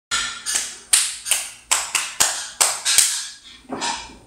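Sharp wooden clicks of abacus beads being flicked against each other and the frame, about two to three a second in an uneven rhythm, each ringing briefly, with a short gap a little after three seconds in.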